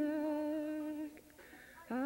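A woman singing, holding a long, steady note that stops about halfway through. A new note slides up into place near the end.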